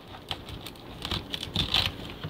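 A kitchen knife cutting through the crisp stems of turnip greens at the top of the roots: a string of small irregular crunches and leaf rustles, busiest in the second half.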